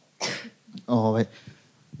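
A man clearing his throat: a short rasping burst, then a brief voiced sound about a second in.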